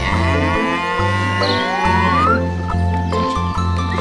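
A cow mooing: one long call of about two seconds, with a tone gliding upward near its end, over background music with a bass line.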